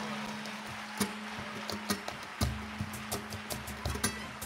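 Flamenco percussion: sparse sharp strikes, a few at first and quickening near the end, some with a low thump, over a steady held low note.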